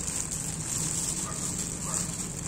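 Thin plastic fruit bag crinkling and rustling as a hand works it open around a cluster of water apples, over a steady high-pitched hiss.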